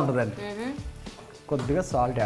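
A person talking over background music, in two short stretches with a quieter pause between them; no frying sound stands out.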